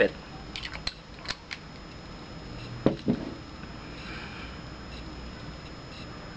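Light clicks and a sharper knock from handling a perfume bottle. Near the end comes a faint, drawn-out sniff as the freshly sprayed wrist is smelled.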